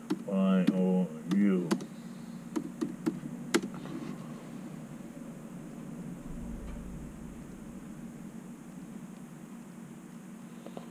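Laptop keyboard being typed on: a handful of separate key clicks a couple of seconds in, after two short wordless voice sounds at the start. A steady low hum of room background fills the rest.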